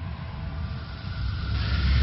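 Rumbling sound effect from an animated intro: a deep, steady rumble, with a hissing whoosh swelling in about one and a half seconds in.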